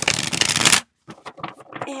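Tarot deck riffle-shuffled: one quick, dense flutter of cards lasting under a second as the two halves are interleaved.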